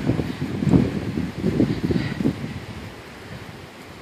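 Wind buffeting the microphone: an irregular low rumble that dies down over the second half.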